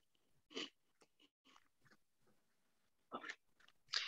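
Near silence on a video call, broken by two faint brief noises, one about half a second in and one about three seconds in.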